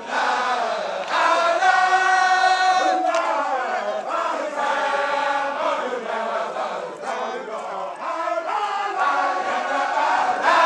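A group of Baye Fall men chanting a zikr together in unison, drawing out long held notes with short breaks between phrases.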